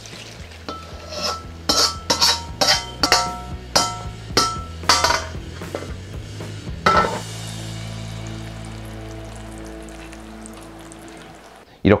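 A steel ladle scraping and knocking against the inside of a wok as fried chunjang is tipped out into a stainless-steel bowl. It is a run of about a dozen ringing metal clinks over the first five seconds, then one louder knock about seven seconds in. After the knock, a steady held musical tone plays.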